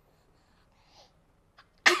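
An infant sneezing once: a single sudden, sharp burst near the end.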